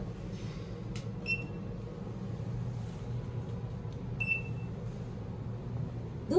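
Hotel elevator card key reader beeping as a card key is touched to it: a short high electronic beep just after the tap, and a second beep about three seconds later, over a steady low hum.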